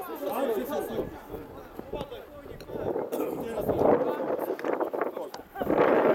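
Voices shouting and calling out across an outdoor football pitch, several overlapping, loudest about three to five seconds in.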